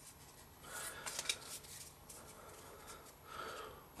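Faint rustle and slide of Pokémon trading cards being flicked through by hand, with a few soft clicks, in two short spells about a second in and near the end.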